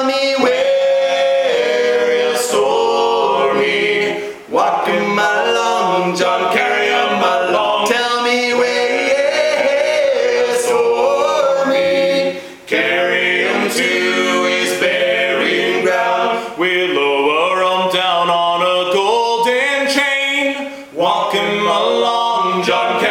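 Three men singing a sea shanty a cappella in close harmony, the lines held and sliding together, with a short breath break between phrases every few seconds.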